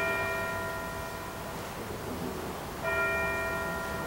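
A bell struck twice, the second strike about three seconds in, each ringing out and fading: the bell rung at the elevation of the consecrated host, between the words over the bread and the words over the cup.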